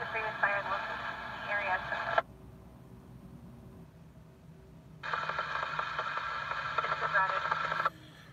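Emergency scanner radio voice transmissions, thin and narrow-sounding: one cuts off abruptly about two seconds in, and after a quiet gap another starts about five seconds in and cuts off just before the end.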